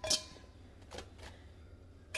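Faint room tone with a single light knock at the start and a smaller one about a second in.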